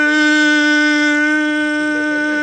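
A man's voice holding one long, steady-pitched shout of "golo" into a microphone, in the manner of a football commentator's drawn-out goal call.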